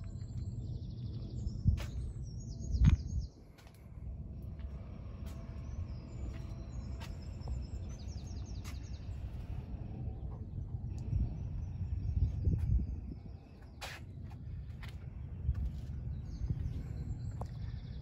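Outdoor ambience: a steady low rumble with birds chirping on and off, and a few sharp clicks and knocks, the loudest about two and three seconds in.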